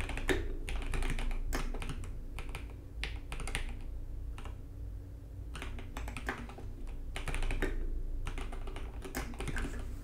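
Typing on a computer keyboard: rapid key clicks in bursts, with a short lull midway.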